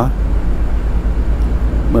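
Steady low rumbling background noise with a faint hiss above it, nearly as loud as the speech around it.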